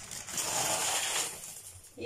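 Dry pasta poured into a pot of boiling water: a noisy pour lasting about a second and a half.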